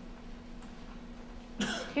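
Quiet room tone with a steady low hum, then a single short cough about one and a half seconds in.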